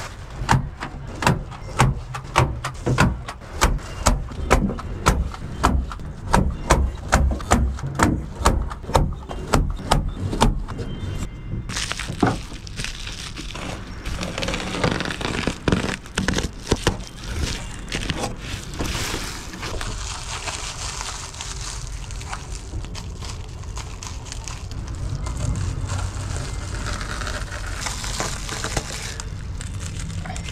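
Staple gun firing in quick succession, about two sharp snaps a second, as reflective foil insulation is fastened to the wooden staves. After that the foil crinkles and rustles as it is handled.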